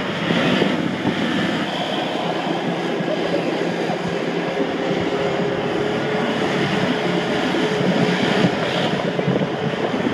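Polaris XP 900 side-by-side engines running as they drift across a wet dirt lot, with a louder hiss of tyres throwing water through a puddle about a second in. Wind on the microphone adds a steady rush.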